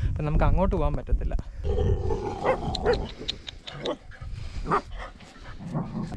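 Dogs barking, a run of short barks from about two seconds in.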